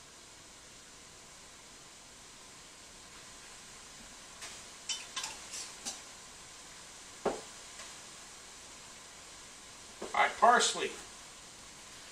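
Spice jars clicking against one another and the kitchen counter as they are picked through, with one sharper knock of a jar set down, over low room tone.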